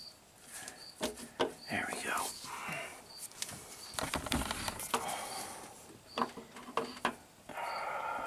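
Oil pump being pried and wiggled off the front of a Hemi V8's crankshaft, giving irregular light metal clicks, knocks and scrapes.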